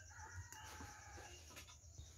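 A rooster crowing faintly in the distance: one drawn-out call lasting about a second and a half, over a low rumble.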